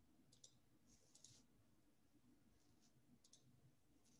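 Near silence with a few faint computer mouse clicks, each a quick pair of ticks, as slides are advanced.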